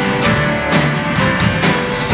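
A live rock band playing, with guitars strummed over a drum kit's steady beat.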